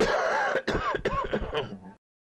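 A man coughing and clearing his throat with hoarse, rasping hacks, a smoker's cough right after exhaling a lungful of weed smoke. It starts suddenly and cuts off abruptly just before the end.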